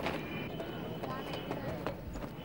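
Faint, distant voices calling out over a steady outdoor background hiss, with a few light clicks.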